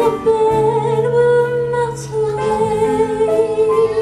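A solo female voice singing a slow musical-theatre ballad, holding two long notes one after the other, over a soft instrumental accompaniment.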